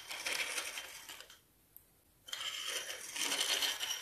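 Small hard plastic toy slide being turned and dragged on a tabletop: two scraping stretches, the first about a second and a half long, the second starting a little after two seconds in.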